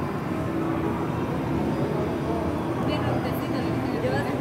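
Steady background din of a busy indoor hall, a low constant rumble with faint, indistinct voices, a few of them a little clearer near the end.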